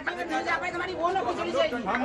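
Several people talking at once, their voices overlapping in a murmur of chatter with no single clear speaker.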